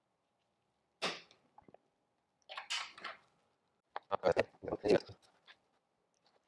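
Silicone rubber thickened with a thixotropic agent to an icing-like paste, being dabbed and spread onto an upright mould surface with a wooden stir stick: a few short dabs and knocks, with a quick run of them about four seconds in.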